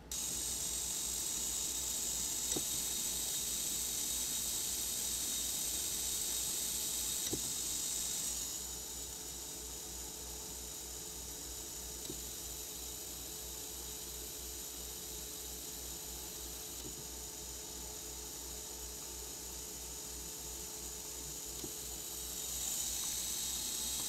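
Small Faulhaber geared DC motor running steadily under Arduino control, heard as a faint, high, hiss-like whine over a low hum. The whine drops about eight seconds in and rises again near the end.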